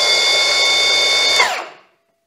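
Milwaukee M18 FUEL M18 FPS55 cordless brushless plunge saw running free at full speed, not cutting, with a steady whine; about one and a half seconds in the trigger is released and the motor and blade spin down.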